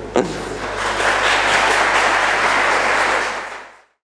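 Conference audience applauding, building up about half a second in and fading out just before the end, with a brief laugh at the start.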